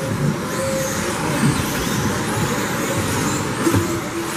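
Electric 1/10-scale 2WD RC buggies with 17.5-turn brushless motors racing on a carpet track: faint high motor whines rising and falling as the cars accelerate and slow, over a steady wash of running noise with scattered low knocks.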